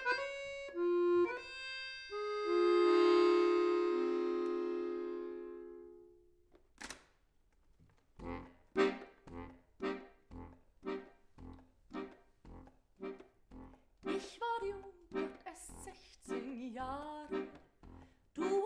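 Chromatic button accordion played solo. It holds sustained chords that fade out around six seconds in, then, after a brief pause, plays short detached chords about twice a second.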